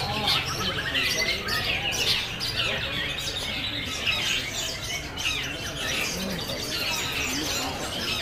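Long-tailed shrike (cendet) singing: a continuous, varied run of quick chirps and squawking notes.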